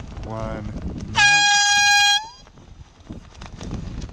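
One loud, steady-pitched air horn blast about a second long, its pitch sagging slightly as it cuts off. It sounds during the count of seconds to a sailing race start, over wind noise on the microphone.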